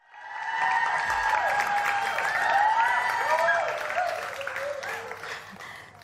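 Studio audience applauding and cheering, starting suddenly and dying away over the last couple of seconds.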